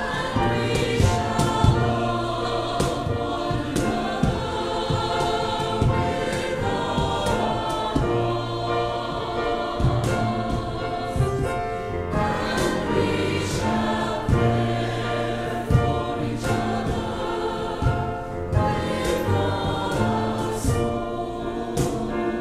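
Mixed church choir singing an anthem in harmony, first 'when we stand, when we fall, when we rise, we are one', then from about halfway 'and we shall love one another with all our hearts'.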